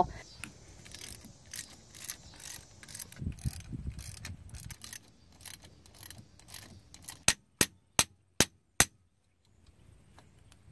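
A ratchet wrench turning a bolt on a tractor's rear hydraulic remote valve block. Scattered light metal clicks, then near the end five sharp, loud clicks in quick succession, about 0.4 s apart.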